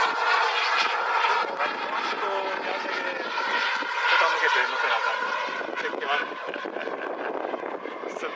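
Radio-controlled model MiG-29 jet flying overhead, a steady high whine that fades gradually as it flies farther off.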